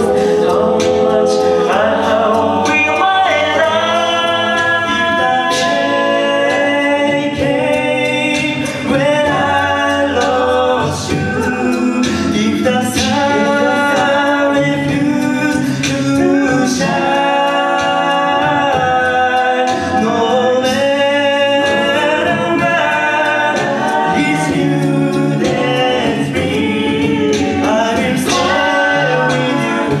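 Male a cappella group singing in close multi-part harmony into microphones, with sharp vocal-percussion hits keeping the beat throughout.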